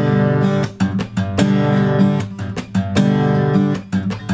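Taylor acoustic guitar played bare-handed in a slap-strum pattern on a G chord: sharp finger smacks on the top strings, each followed by the chord sounding as the fretting fingers press down, then a full downward strum, over and over. Between the smacks the chord rings.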